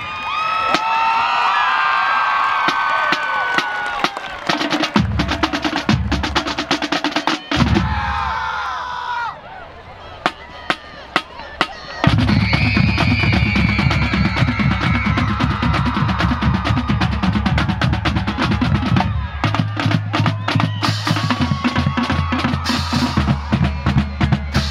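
High school marching band opening its field show: scattered percussion hits and drumstick clicks, then a quieter stretch of clicks, and about halfway through the full band comes in loud with brass, drumline and bass on a steady beat.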